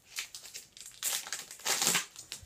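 Clear plastic overwrap of an IV fluid bag crinkling in bursts as it is pulled open by hand, loudest near the end.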